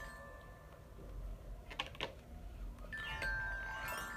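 Glockenspiel played with a mallet in glissando runs, the metal bars ringing as notes step up and down in pitch, with a couple of single taps near the middle and a rising run of notes starting near the end. The up-and-down runs are a sound effect for a beetle climbing up and down a flower.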